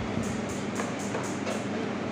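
A latex balloon being handled and rubbed, giving a run of short scratchy rubbing sounds, about four a second, over a steady low hum.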